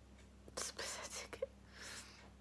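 A woman's breathy, unvoiced sounds close to the microphone, a cluster of quick ones in the middle and another near the end, as she is on the verge of crying.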